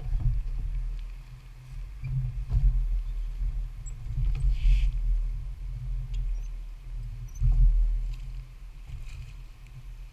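Oar raft being rowed on calm water: an uneven low rumble that swells and fades, with faint clicks and a brief splash-like hiss about halfway through.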